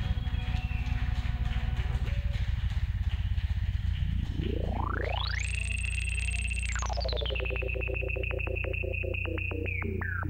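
Electric bass played through an effects processor: a sustained low bass drone under a synth-like pitched tone. Four seconds in, the tone sweeps steeply upward, holds high, then drops to a lower steady pitch about three seconds later, with a rapid chopping pulse running through it.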